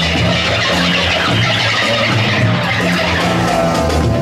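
A live street band plays continuously, led by electric guitar, with held melodic notes over a steady low bass.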